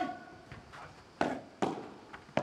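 Padel ball being hit back and forth in a rally: short, sharp pops of the ball off the rackets and court, a faint one early and two loud ones a little under half a second apart just past the middle.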